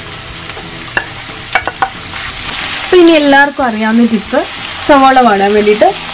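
Sliced red onions hitting hot oil in a frying pan with curry leaves and green chillies, sizzling steadily as a wooden spoon stirs them, with a few light knocks of the spoon about a second in. Over the second half come two loud, drawn-out wavering tones, each about a second long.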